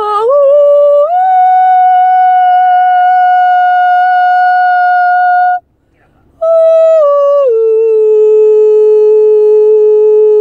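A woman singing two long, held, wordless notes unaccompanied. The first climbs in steps to a high note within the first second and holds steady for about five seconds. After a short pause the second starts high, steps down about a second later, and holds a lower note to the end.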